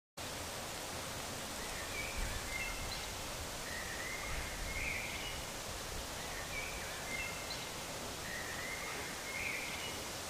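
Outdoor ambience: a steady hiss of wind or rustling with a small bird singing a short high phrase, repeated about four times at intervals of two to three seconds.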